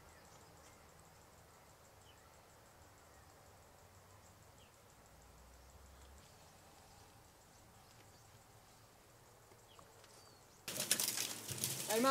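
Faint outdoor background with a few faint short chirps. Near the end comes a sudden, loud rustling of leaves and branches close to the microphone.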